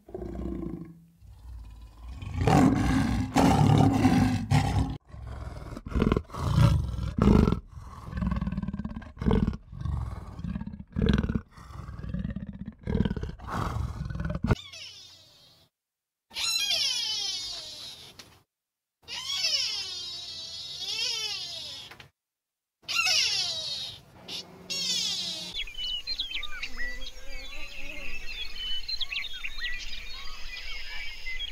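A jaguar growling and roaring in a series of rough, loud calls for about the first fourteen seconds. These give way to bouts of high-pitched, sweeping squeals, and then to a steady outdoor hiss with faint chirps near the end.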